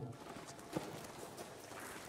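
Low background hiss with a single soft tap about three-quarters of a second in.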